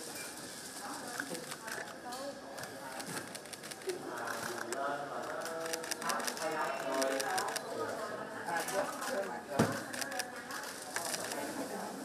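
Several people talking at once in low, indistinct overlapping conversation, with scattered light clicks throughout and one sharper knock about three quarters of the way through.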